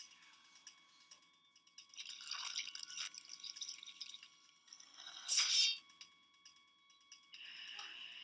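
Film soundtrack sound effects under a faint steady tone: scattered rustling, then one brief, louder noisy burst about five seconds in.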